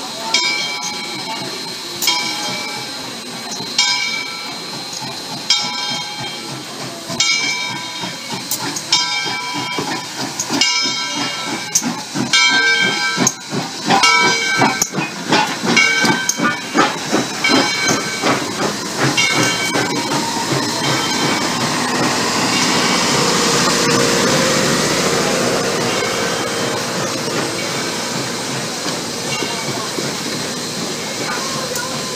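A steam locomotive passing close at low speed, its bell ringing in strokes about every two seconds that come closer to once a second, over hissing steam and the knock of the running gear. In the last third the bell stops and the passing passenger coaches and steam hiss make a steady rushing sound.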